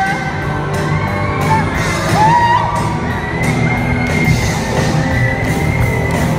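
Live rock band playing loudly: electric guitar with held notes that bend in pitch, over drums and cymbals.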